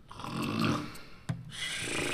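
A man snoring: two snores, the second starting about halfway through.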